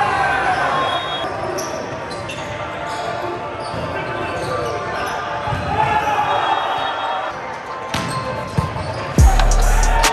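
Volleyball game sound echoing in a gymnasium: players shouting and calling to each other, with the ball being struck. A sudden loud thump near the end.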